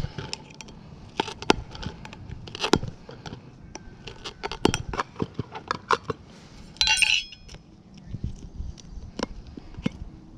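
Rotary rock-tumbler barrel being opened by hand: a string of small metal clicks, clinks and scrapes as the lid nut, washer and metal lid are worked loose, with a short louder rattle about seven seconds in.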